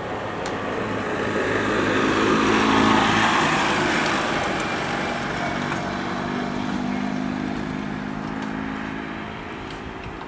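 A motor vehicle's engine passing by, growing louder to a peak about three seconds in and then slowly fading away.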